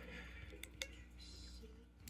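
Near-silent room tone with two faint short clicks a little over half a second in: a thumb pressing the light-mode button on a DeWalt DCD1007 cordless hammer drill to change the work light's brightness.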